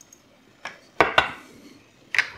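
A hot glass mason jar being set down on a granite countertop: a soft knock, then two sharp glassy clinks close together about a second in.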